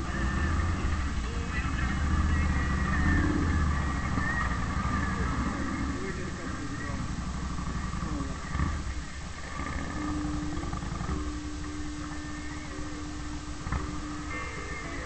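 Touring motorcycle engine running as the bike pulls away and rides on, heard from a camera mounted on the bike. The low engine rumble is strongest in the first few seconds and then settles to a steadier drone.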